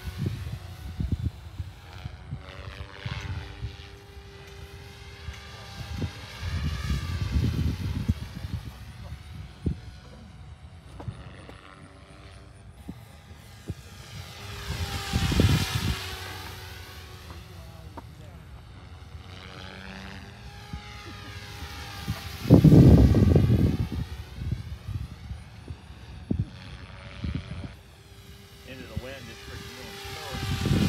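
Goosky RS4 electric RC helicopter flying circuits: a steady rotor-and-motor whine that bends up and down in pitch as it passes back and forth. Low rumbling gusts come through several times, loudest about two-thirds of the way in.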